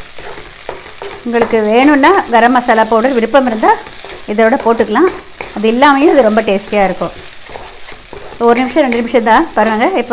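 A wooden spatula stirring and scraping a thick green paste of ground coconut, coriander and green chilli as it fries in a nonstick pan, with a light sizzle. The scraping comes in bursts of squeaky strokes with short pauses between them.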